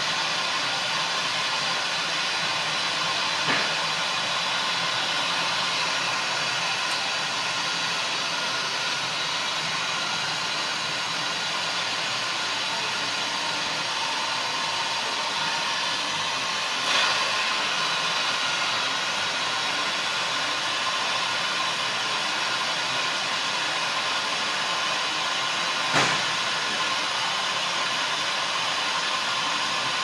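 Steady hiss of compressed shop air flowing through a rod-bearing clearance tester fitted to an engine cylinder, with three brief clicks spread through it.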